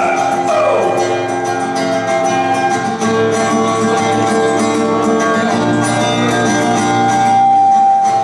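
Live acoustic guitar playing a folk tune, with a melody of long held notes over it; one note is held for about a second near the end.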